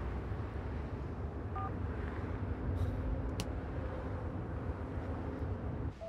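Steady low rumble of road and engine noise inside a moving car's cabin. A short electronic beep sounds about a second and a half in.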